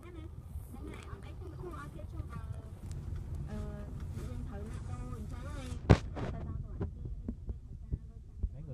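Car running slowly, heard from inside the cabin as a steady low engine and road rumble. About six seconds in there is one sharp knock, followed by a few lighter clicks.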